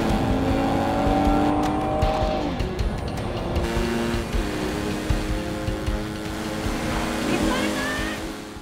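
Film chase soundtrack: car engines running at speed, with a tyre squeal near the end, under a music score with long held notes.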